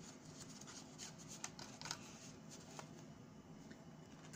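Faint rustling of construction paper and paper cutouts being handled and slid, with a few soft scattered ticks.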